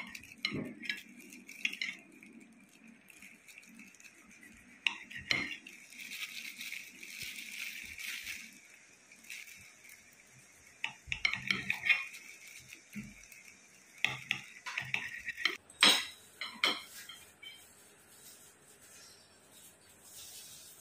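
Kitchen knife slicing Chinese sausage on a ceramic plate: the blade knocks and clinks against the plate in irregular taps, with a few louder clinks.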